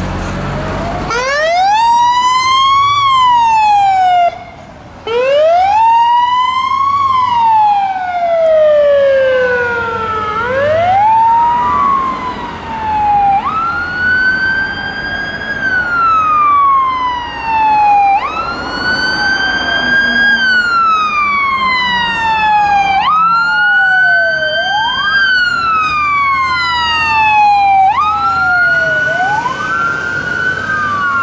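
Fire engine sirens wailing as the trucks pass one after another. First a slow, even rise and fall in pitch, then, from about a third of the way in, a siren that jumps up quickly and falls away more slowly every two to three seconds. Two sirens overlap near the end.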